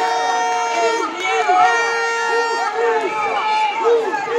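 A woman's loud voice drawn out into two long held notes, as if chanting or calling out, with other voices of the crowd around it.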